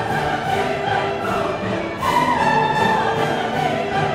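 Orchestral classical music: a held, wavering melody line over sustained accompaniment, swelling louder about halfway through.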